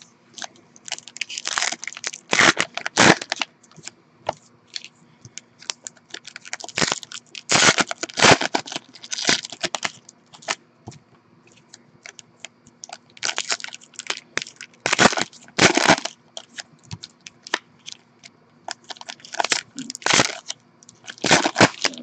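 Foil wrappers of 2014 Panini Prizm football card packs crinkling and tearing as the packs are ripped open by hand, in four bursts of a few seconds each with quieter handling between.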